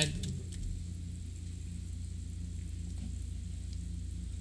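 Steady low hum from the recording setup, with no speech and a few faint ticks.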